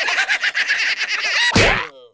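Three cartoon cockroaches giggling together in high, rapid chattering voices, cut off about one and a half seconds in by one loud slap as a fly swatter comes down on them.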